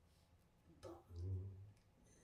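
A quiet click a little under a second in, followed by a short, low voiced sound from a performer's voice into the microphone.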